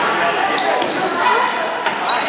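Badminton rally in a gym hall: two sharp racket strikes on the shuttlecock about a second apart, and a sneaker squeak on the court floor about half a second in, over echoing crowd chatter.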